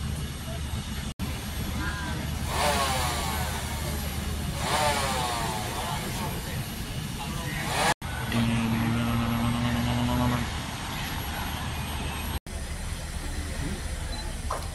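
A steady low engine drone with people talking over it; a steadier hum joins it for about two seconds past the middle. The sound is broken by three brief dropouts.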